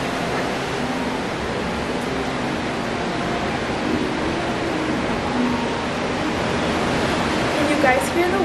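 Ocean waves breaking: a steady, even wash of noise.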